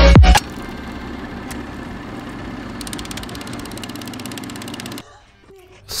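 Loud electronic dance music cuts off in the first half-second. It gives way to a steady mechanical whir, with a fast, even clicking in its second half, that stops about a second before the end.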